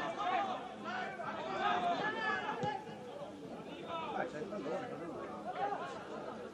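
Players and coaches on a football pitch shouting and calling out to one another, several voices overlapping, louder in the first half and fainter after.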